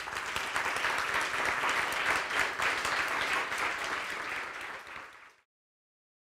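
Audience applauding, many hands clapping together; the applause dies away and ends about five seconds in.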